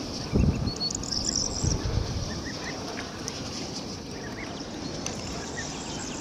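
Ducklings and goslings peeping, scattered short soft chirps. Two low thuds in the first two seconds are the loudest sounds, and there is a brief higher twitter about a second in.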